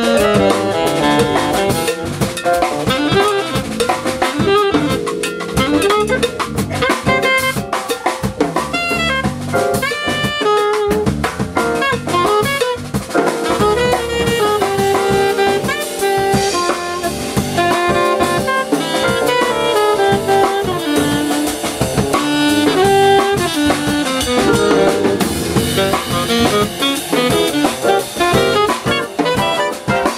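Live jazz quartet playing: alto saxophone carrying a moving melody line over electric keyboard, electric bass and a drum kit keeping busy time.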